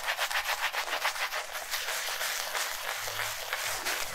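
Pearl SBC 404 synthetic shaving brush face-lathering shaving cream on a stubbled face: a quick, regular wet swishing of several brush strokes a second as the lather is built up.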